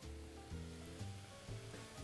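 Faint background music with held notes, over a soft sizzle of king trumpet mushrooms searing in hot olive oil in a skillet.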